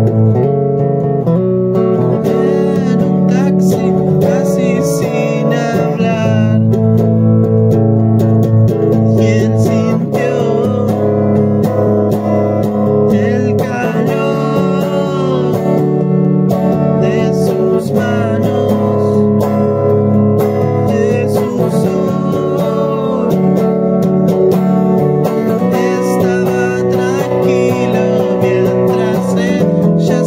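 Acoustic guitar playing chords with a voice singing over it, in an amateur cover of a song.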